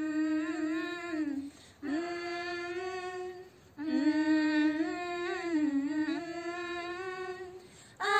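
Girls' voices humming a melody in three long held phrases, with two short breaks between them; the last phrase fades out near the end.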